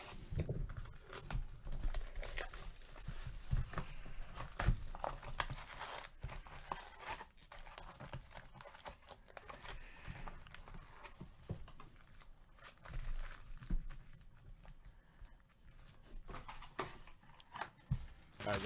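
Plastic shrink-wrap being torn off a sealed box of trading cards and crinkled, then foil card packs rustling as they are handled, with irregular crackles and small clicks.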